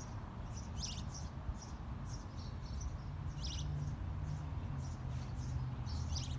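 Short, high-pitched bird chirps at an irregular pace of about two a second, over a low steady hum.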